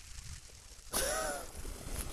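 A man's audible sharp intake of breath about a second in, with a faint pitched squeak in it, taken in a pause between sentences.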